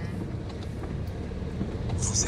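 Steady low rumble of a car's engine and tyres heard from inside the cabin while driving slowly in city traffic.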